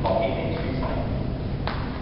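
A man speaking in a large hall, with one sharp click near the end.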